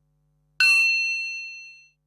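A single bright metallic ding, struck once about half a second in, its high ringing tones fading away over about a second and a half.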